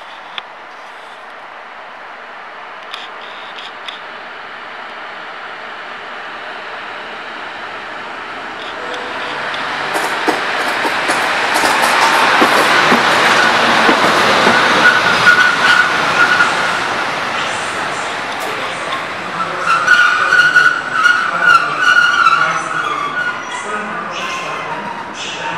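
EU07 electric locomotive passing close at low speed. Its rolling noise swells to a peak in the middle, with wheels clicking over rail joints and points. A high wheel squeal comes twice, in the middle and again toward the end.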